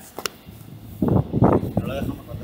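Indistinct talking, with a short sharp click about a quarter of a second in.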